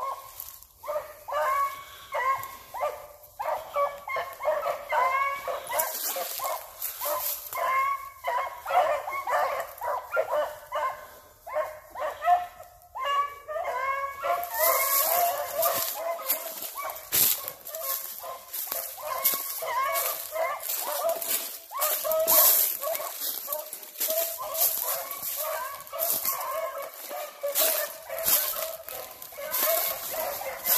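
A pack of hunting hounds baying in many overlapping voices as they run a scent trail. From about halfway there is also rustling and snapping of brush close by.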